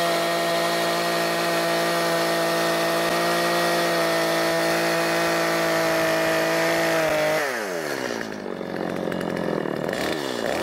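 Stihl two-stroke chainsaw held at high revs with its bar in a log, making a plunge cut. About seven seconds in the throttle is released and the engine note falls steeply toward idle.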